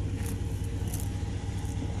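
Steady low hum of an idling pickup truck engine, with a few faint short hisses over it.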